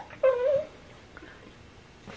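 A brief high, wavering vocal sound, about half a second long, shortly after the start.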